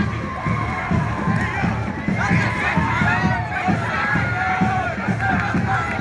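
Crowd shouting and cheering, many voices rising and falling together, over a steady low beat of about two to three thumps a second.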